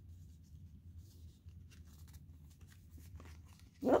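Faint rustling and scraping of stiff card as fingers work at a pop-up book's flap, which won't come up, over a low steady hum.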